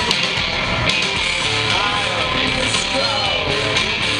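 Live rock band playing at a steady, loud level: electric guitars and drums, with bending guitar lines, heard from within the crowd.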